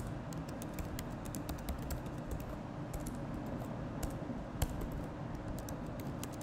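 Typing on a computer keyboard: a quick, irregular run of key clicks, with one louder keystroke about four and a half seconds in.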